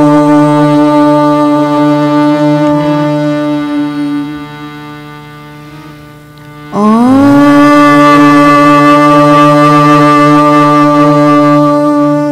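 Conch shell (shankh) blown in two long blasts: the first is held and fades away about four seconds in; the second begins about seven seconds in with a quick upward slide in pitch and is held steady to the end.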